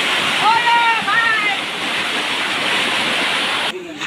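Floodwater rushing down a street as a torrent: a loud, steady rush of water. It cuts off suddenly shortly before the end.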